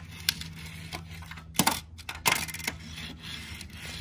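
Small diecast toy cars being set down and pushed by hand on a hard surface: a few sharp metallic clicks and clacks, the loudest about a second and a half in and just after two seconds, over a faint steady hum.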